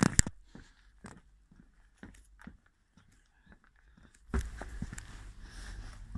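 Footsteps on glass-wool insulation and wooden boards, with soft crunching and scattered knocks. The steps are faint and sparse at first and grow louder and busier, with low rumbling handling noise, from about four seconds in.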